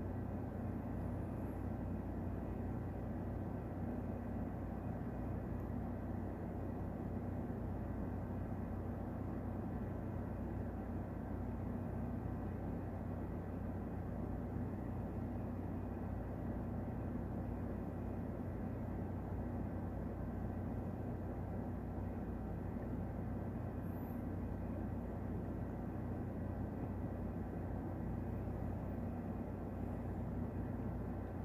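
Steady low mechanical hum with a few faint, higher steady tones above it, unchanging in level.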